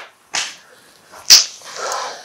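A single loud, sharp smack about a second and a half in, with softer breathy sounds before and after it.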